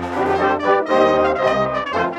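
A brass band playing a quick-moving tune: cornets on the upper parts over low bass notes from the tubas.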